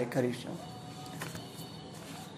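A man's speaking voice finishes a word at the start, then gives way to a faint held musical tone over quiet background noise, with one soft click.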